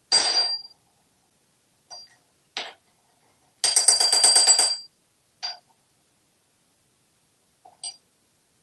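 A metal spoon held in an African grey parrot's beak clinking against a sink basin: single ringing clinks, then a fast rattle of rapid taps lasting about a second near the middle, then a few more clinks.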